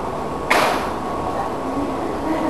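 A dropped object hitting the ground with a single sharp impact about half a second in, followed by a brief fading rattle.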